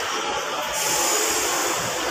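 Bus terminal din: buses running in the bays blend into a steady noise, with a hiss coming in just before a second in.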